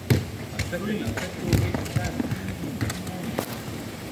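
Indistinct low voices with a scattered series of sharp knocks and thuds on the outdoor court.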